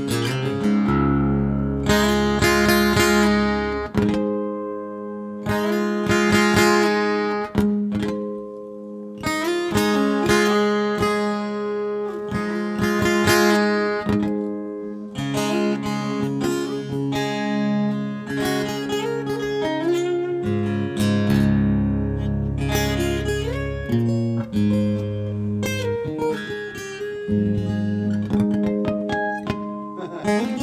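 Solo acoustic guitar playing an instrumental tune, with a picked melody over ringing bass notes.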